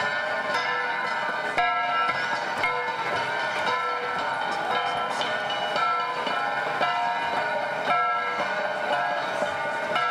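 An ensemble of flat bronze gongs (Cordillera gangsa), each held by its cord and struck in an interlocking rhythm, giving overlapping metallic ringing tones with a stronger accent about once a second.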